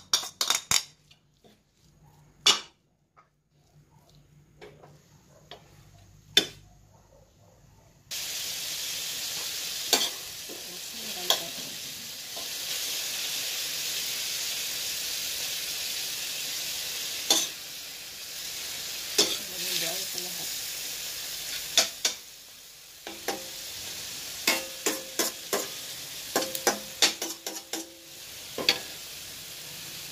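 A spoon clinks and scrapes as minced beef is tipped into a stainless steel frying pan. About eight seconds in a steady sizzle starts as the beef fries, with repeated clinks and scrapes of the spoon against the pan as it is stirred.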